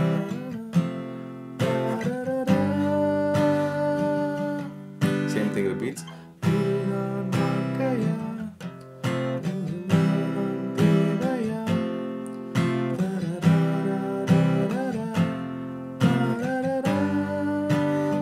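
Steel-string acoustic guitar strummed through a chord progression, a new chord struck every second or two, with the G chord held longer.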